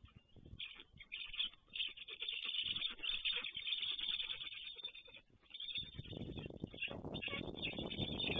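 Young black storks at the nest giving hoarse, rasping calls as another stork arrives and lands beside them. About six seconds in, a louder low rushing noise begins.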